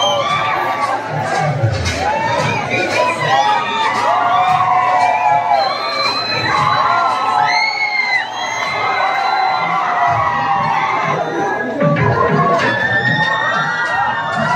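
Audience of students cheering and shouting for a stage performer, many voices overlapping loudly without a break.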